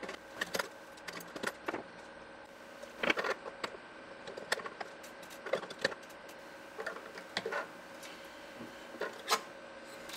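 Flush cutters snipping the trimmed resistor leads off a circuit board, a dozen or so sharp snips at irregular intervals, with light clinks of the cut wire leads being gathered.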